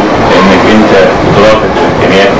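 A man speaking, over a steady background noise.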